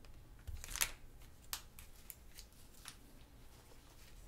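Long strip of printed paper handled and stretched close to the microphone, giving a few sharp paper crackles: the strongest a little under a second in, others around the middle and near the end.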